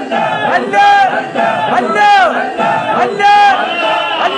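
A group of men chanting a devotional refrain in unison, one loud call about every 1.2 seconds, each call rising and falling in pitch.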